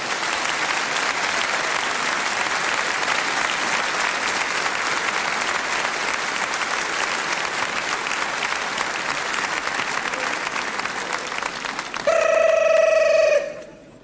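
A hall audience applauding steadily for about twelve seconds, thinning slightly towards the end. Then a single telephone ring, a steady pitched tone lasting about a second and a half.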